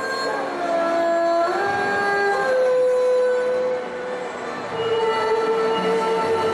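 Solo erhu bowed in long held notes joined by sliding pitch changes. There is a falling slide just after the start and a step up about a second and a half in, then a softer moment about four seconds in before the next sustained note.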